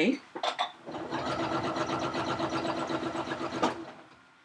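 Janome domestic sewing machine stitching free-motion quilting at a fast, even rate for a few seconds. It starts about a second in and stops shortly before the end. It is running at the steady mid speed set on its speed control, with the foot pedal held fully down.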